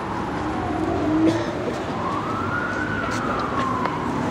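A wailing siren, one tone slowly rising and falling in pitch, about one sweep every four seconds.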